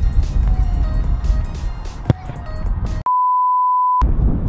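A football struck once, about two seconds in, over low wind rumble on the microphone. About a second later all sound cuts out, replaced by a steady high-pitched censor bleep that lasts about a second.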